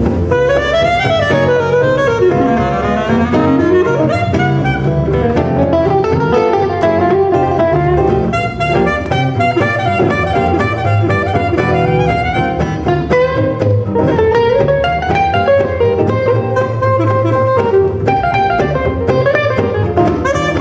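Gypsy-jazz (jazz manouche) quartet playing live: a clarinet carries a flowing lead line with quick runs over two acoustic guitars playing rhythm and a double bass.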